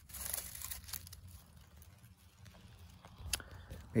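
Dry leaf litter rustling and crunching for about a second as a potato bait is set back down among the leaves, followed by faint handling noise and a single click.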